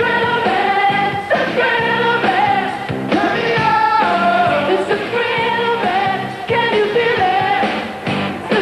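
A live pop-rock band playing, with female lead and backing singers singing together in long held notes.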